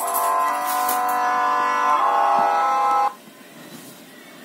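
A Nokia 3110 classic mobile phone playing a ringtone preview through its small loudspeaker: a tune of held notes that cuts off suddenly about three seconds in.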